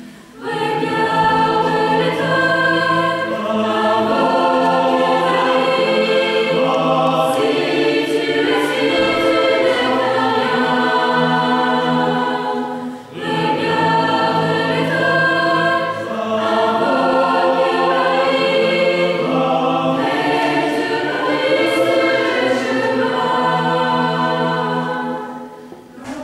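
Mixed choir of young women and men singing in harmony, in long held phrases, with a short breath break about halfway through.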